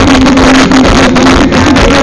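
Amplified live band music heard from within a concert crowd, recorded so loud that it comes out heavily distorted as a dense, buzzing wash with a wavering low hum.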